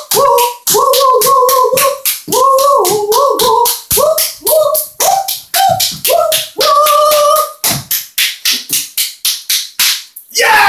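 High, wordless singing in short notes, each sliding up into its pitch, over a fast, steady clicking beat of about five or six strokes a second. The voice drops out for a moment near the end while the beat carries on.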